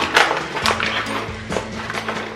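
Rustling and scraping of a flour bag as a spoon digs into it to scoop flour, over background music with a steady low note.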